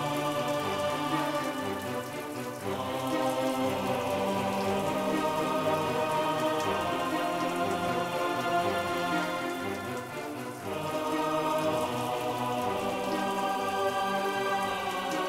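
Water spraying steadily in a decontamination shower, heard together with sustained background music chords. The music dips briefly twice, once early and once about two-thirds of the way through.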